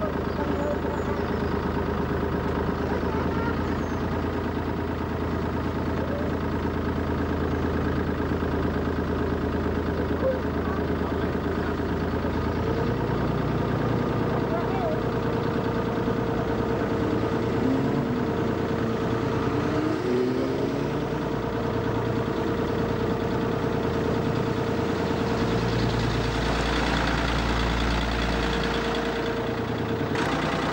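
Small river cruising boat's engine running steadily, a drone of several steady tones. The note shifts about twelve seconds in, and a deeper low hum swells near the end.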